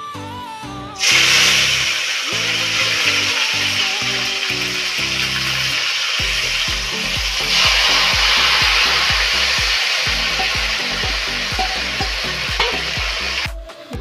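Marinated rooster meat hitting hot oil in a steel kadai: a loud sizzle starts suddenly about a second in and carries on steadily, swelling again around the middle as more meat is poured in, then dies away near the end.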